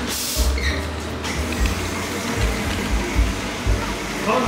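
Background music with a bass line, with a loud hiss during about the first second.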